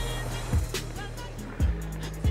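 Background music with a beat and held bass notes.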